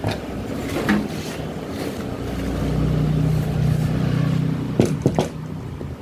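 A low motor hum with a steady pitch swells in the middle and fades again, with a few sharp knocks near the end.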